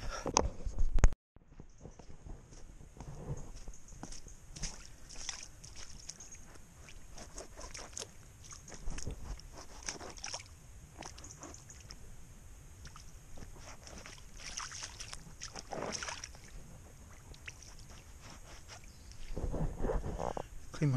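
Footsteps splashing and sloshing through shallow water on a lane, trainers treading through it in uneven splashes.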